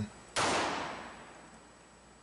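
A single shot from a Smith & Wesson Model 915 9mm pistol, cracking suddenly and then dying away over about a second and a half.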